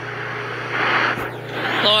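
A vehicle passing by in street traffic, its noise swelling to its loudest about a second in and then fading away.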